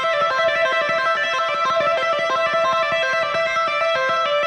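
Electric guitar played legato with the fretting hand: a fast, even run of notes hammered on going up the pattern and pulled off coming down, with one note recurring throughout. The notes ring clean, with no string noise.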